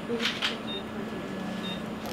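Patient monitor beeping about once a second, a short high beep in time with the pulse, over a steady low hum. A brief rustle comes near the start.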